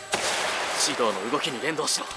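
Anime soundtrack: a noisy boom-like sound effect bursts at the start and fades over about a second, then a character speaks a line of dialogue.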